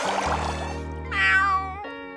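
A cartoon snail's cat-like meow, one call starting about a second in and lasting most of a second, over background music with held low notes.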